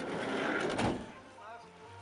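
A van's sliding side door rolling shut and latching with a clunk about a second in, followed by a low steady hum of the idling engine.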